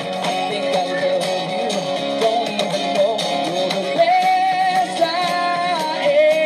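Live acoustic band music with no words: strummed acoustic guitar over a steady beat of hand percussion on a cajon, with a wavering melody line that holds long notes near the end.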